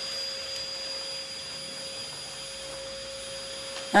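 A steady background hiss with faint steady tones running through it, with no distinct events.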